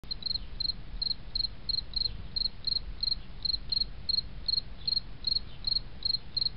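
Cricket chirping steadily: a short, high-pitched chirp repeated about three times a second.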